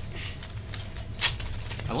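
A sealed pack of trading cards being torn open by hand: light crinkling of the wrapper, with one sharper tearing crackle a little past a second in.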